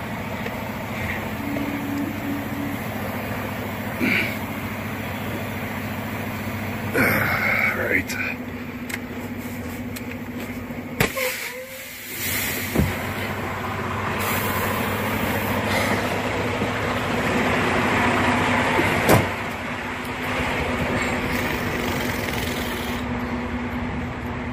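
Semi-truck diesel engine running, heard from inside the cab while the rig is reversed into a parking spot. The engine is steady, grows louder for several seconds past the middle, and a sharp knock sounds near the end of that louder stretch. Scattered clicks and knocks occur throughout.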